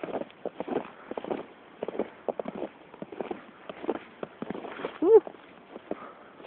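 Footsteps crunching through snow at a walking pace, a person and a dog walking. About five seconds in, a brief rising-and-falling vocal sound stands out as the loudest event.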